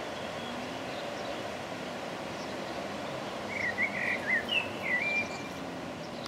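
A songbird sings one short phrase of quick, varied warbling notes just past the middle, over a steady outdoor rushing noise.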